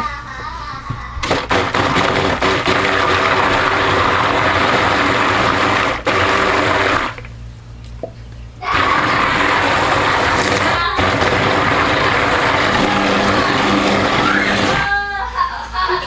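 KitchenAid stick blender running in soap batter in a plastic bowl, a steady motor whine over a churning hiss. It runs twice, with a pause of under two seconds about seven seconds in, and stops about a second before the end.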